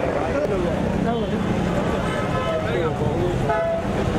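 Several voices talking over one another, with a car horn tooting briefly near the end.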